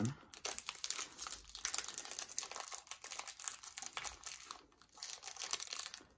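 Foil wrapper of a Pokémon trading card booster pack crinkling in dense, continuous crackles as fingers pick at it, trying to tear the sealed pack open by hand.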